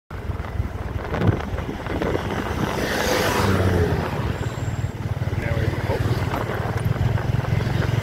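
A small vehicle engine running steadily at road speed, heard from aboard, under the rumble of tyres on a rough dirt road. There is a sharp knock about a second in, and the noise swells louder around three seconds in.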